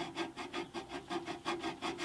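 Hand file being stroked quickly back and forth across enamelled steel, cutting a groove in a bandsaw's steel part in rapid, even rasping strokes.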